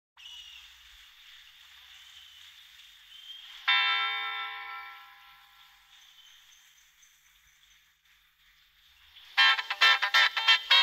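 Live rock band recording opening: faint hiss, then a single held chord about four seconds in that fades away over a couple of seconds. After a near-silent pause, the band comes in loudly with a rhythmic passage near the end.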